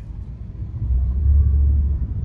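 Low rumble of a car in motion heard from inside the cabin, growing louder in the second half.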